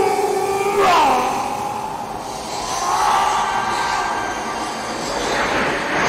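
Horror film soundtrack: eerie, sustained music tones that slide downward about a second in, then swell again. Near the end a loud sweeping rush builds.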